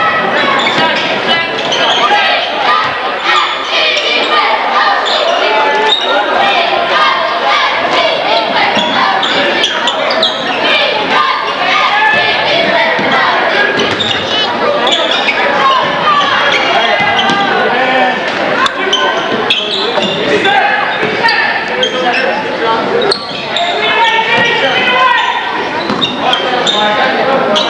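Basketball dribbling and bouncing on a gym's hardwood floor during a game, with continuous spectator chatter and shouts echoing through the hall.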